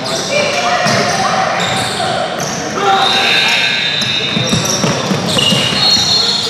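Basketball bouncing on a hardwood gym floor, with sneakers squeaking and a crowd of voices chattering and calling out, echoing in a large gym.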